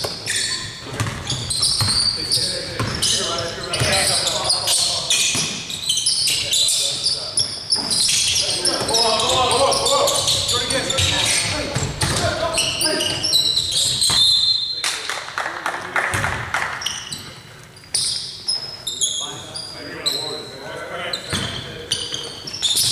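A basketball being dribbled on a hardwood gym floor, with sneakers squeaking and players' voices calling out, all echoing in a large, mostly empty gymnasium.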